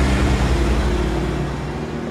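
A car driving away close by: the low engine and tyre rumble swells, then fades as it moves off.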